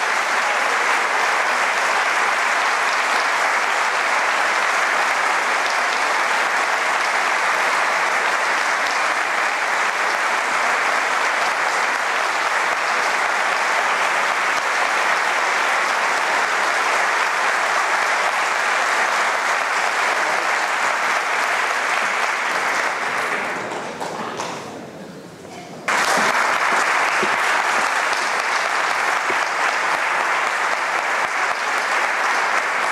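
Theatre audience applauding steadily at full strength; near the end the applause dies down, then comes back suddenly at full level.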